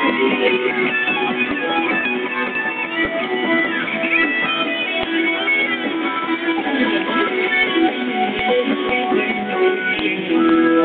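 Live rock band music carried by an amplified electric guitar, an instrumental stretch with no singing.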